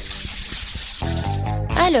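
A swoosh transition sound effect: a hissing sweep of noise for about the first second. Background music with steady chords comes in after it.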